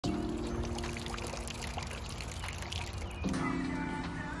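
Water pouring from an outdoor drinking-fountain spigot and splashing onto the ground by a water bowl, under background music. The splashing cuts off about three seconds in while the music carries on.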